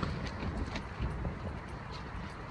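Nylon fabric of a Hilleberg Altai inner tent rustling and a few light ticks as its hooks are fastened onto the ring at the tent's peak, over a low rumble.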